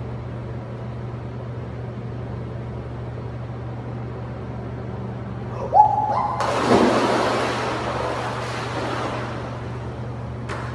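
A person falling into an indoor swimming pool: a sudden loud splash a little past the middle that dies away over about three seconds, over a steady low hum.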